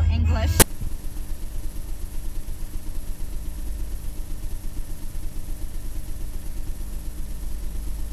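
Voices and a low hum cut off abruptly with a click just over half a second in. After that comes a steady, low, fluttering rumble with a faint hum: an analog TV-static noise effect.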